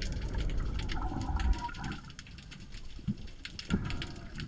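Muffled underwater water noise picked up through an action camera's waterproof housing as it moves through a kelp forest: a low rumbling swash for the first second and a half, then quieter, with scattered small clicks and two dull knocks near the end.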